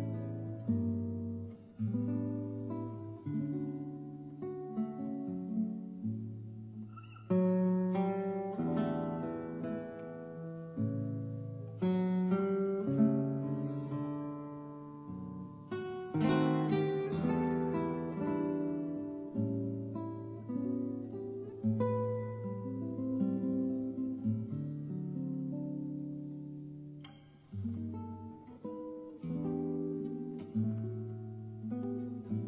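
Acoustic guitar playing an instrumental passage of a slow ballad without singing, plucked and strummed chords ringing and fading.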